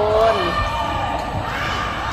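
Volleyballs thudding on the hard floor of a large indoor court and echoing round the hall, with a steady held tone underneath.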